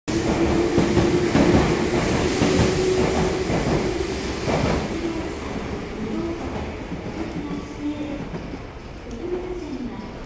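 Electric train running on the rails with rumbling and clattering, loudest in the first four or five seconds and then dying down. A voice, likely a station announcement, comes in over it in the second half.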